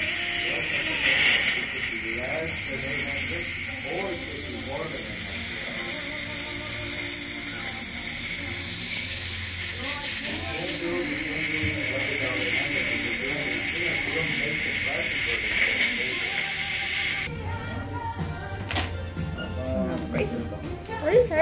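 Dental saliva ejector suction running, a steady high hiss, keeping the teeth dry while braces are bonded. It cuts off suddenly about three seconds before the end.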